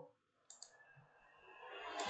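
Near silence, broken by two faint clicks in quick succession about half a second in, from a computer mouse being clicked while placing components in circuit-simulation software.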